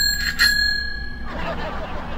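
A small bell rings twice, a bright ding-ding about half a second apart, with the ring fading within a second.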